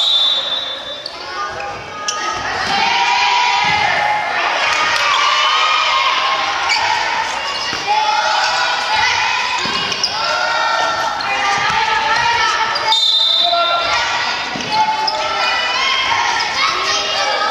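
High children's voices shouting and calling out almost without a break, echoing in a gymnasium, with a few sharp thuds of a dodgeball being caught, thrown or bouncing off the wooden floor.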